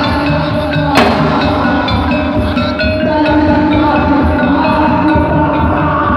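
Live traditional Indonesian gamelan-style ensemble playing: ringing struck metallophone notes over a steady hand-drum pattern, with one sharp, loud hit about a second in.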